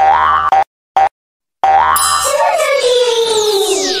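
Cartoon sound effects of a children's channel logo sting: a short pitched note, a brief blip about a second in, then a long sweep that rises and then slides steadily down in pitch, with a whistle-like tone falling and fading near the end.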